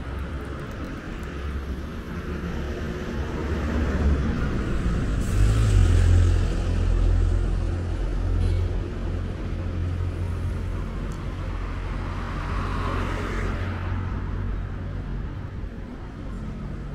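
Road traffic: cars driving past over a steady low rumble. The loudest pass swells and fades about five to seven seconds in, and a smaller one about twelve to thirteen seconds in.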